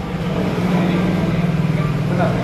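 A steady low mechanical hum, growing louder about half a second in and then holding steady.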